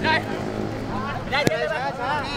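Football players shouting short calls to each other across the pitch, with a sharp knock of a ball being kicked about one and a half seconds in, over a steady low hum.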